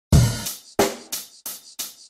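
Solo drums: bass drum, snare and cymbal strokes at about three a second, each dying away quickly, the first hit the loudest.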